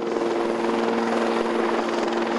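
Large helicopter hovering close by while carrying an underslung load of debris on a sling line: steady engine whine over the rotor noise.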